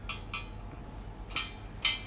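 Hands shaping a ball of wet grated potato and parsnip latke mixture over a stainless steel tray: a few short, sharp clicks, the loudest near the end as it is set down on the tray.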